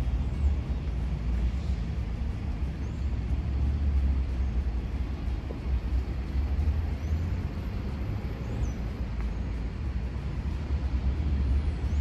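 Outdoor background noise dominated by a steady low rumble, with no distinct events.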